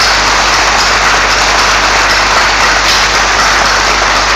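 Large audience applauding, a dense steady clapping that holds at one level throughout.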